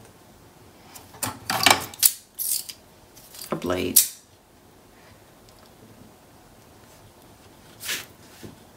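A steel ruler being shifted and set down on paper over a cutting mat: a few short scraping and clattering handling sounds between about one and four seconds in, and another brief one near the end.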